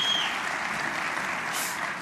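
Audience applauding steadily, with a high held whistle that stops just after the start.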